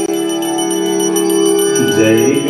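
A conch shell (shankha) blown in one long steady note, with a small brass hand bell ringing rapidly alongside it.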